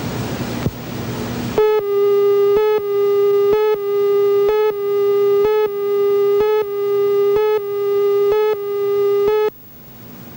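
Videotape leader countdown tone: a steady, buzzy tone broken by a short gap about once a second, as the numbers count down. It starts after about a second and a half of tape hiss and hum and cuts off suddenly near the end.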